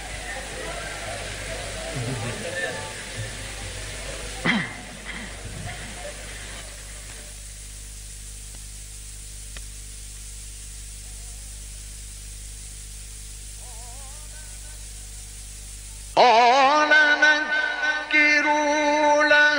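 Audience voices murmuring and calling out during a pause in a live Quran recitation, over the steady hum of an old recording. About two seconds before the end, the reciter's voice comes in loudly with a long, wavering melismatic phrase of chanted tajwid recitation.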